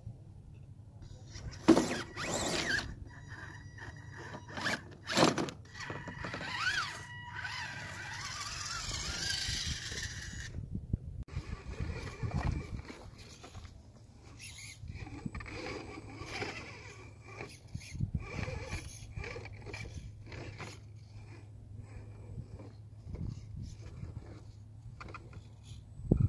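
RC scale rock crawler's small electric drivetrain whining in uneven spurts as its tyres scrape and scrabble over bare rock, with a couple of sharp knocks early on.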